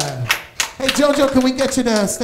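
Speech: a voice talking, with a short pause about half a second in.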